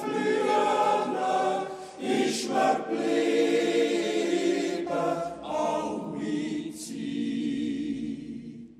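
Swiss men's yodel choir (Jodlerclub) singing a cappella in close harmony, holding long chords with short breaks between phrases about two and five seconds in.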